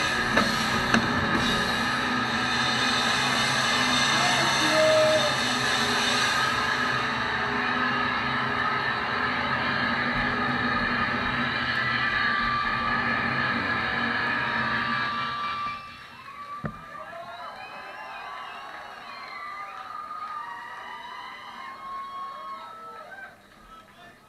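A rock band's last drum hits, then electric guitars and amps left ringing with sustained feedback tones for about fifteen seconds before cutting off suddenly. After the cut, a single knock, then voices of the crowd chattering.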